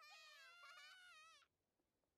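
A child's high-pitched voice crying out in distress from an anime soundtrack, faint and wavering, cutting off suddenly about one and a half seconds in.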